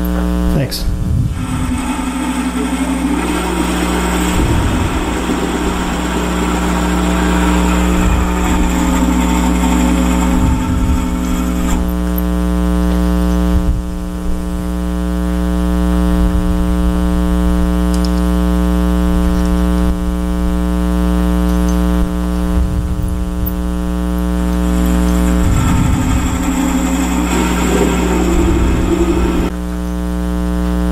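A wood lathe runs with a steady motor hum while a boring bit in a drill chuck cuts slowly into the end grain of the spinning wooden blank. The rough cutting noise is strongest for the first dozen seconds and again near the end, and lighter in between.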